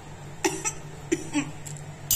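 A woman coughing in a few short bursts, her throat burning from very spicy food.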